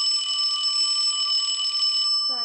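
A mechanical alarm clock bell ringing loudly and continuously, its hammer rattling rapidly against the bell.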